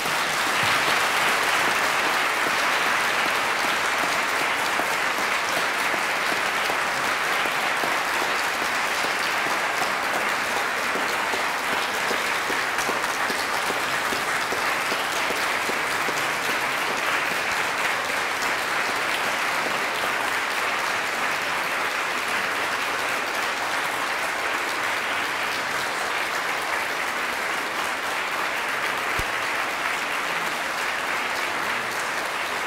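Sustained applause from a large audience in a hall. It sets in all at once, then holds steady and eases off slightly toward the end.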